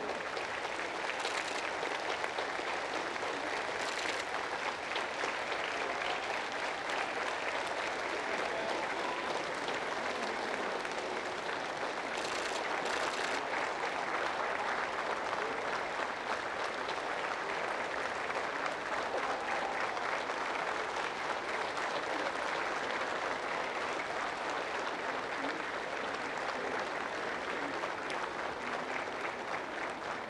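Large audience applauding steadily, dense clapping that keeps going without a break.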